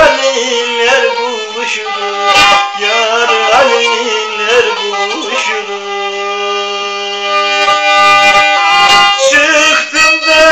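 A bowed folk fiddle, held upright, playing a melody over a steady low drone. A man's singing voice with wavering ornaments runs over it in the first half, and steadier held fiddle notes follow.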